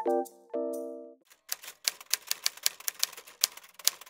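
A few soft electric-piano notes end about a second in, followed by a quick, even run of typewriter key clicks, about six a second, as the title text comes up.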